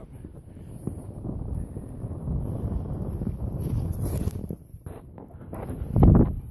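Low rushing rumble of a wood fire burning hard in an Uberleben Stoker twig stove under its strong draft, mixed with wind on the microphone. A few knocks near the end as the camera is handled.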